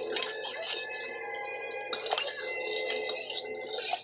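A spoon stirring a milky coffee-jelly mixture in a stainless steel pot, scraping and clinking against the metal, with a couple of sharper clinks in the second half.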